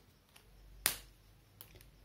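A single sharp click a little before the middle, against faint room tone.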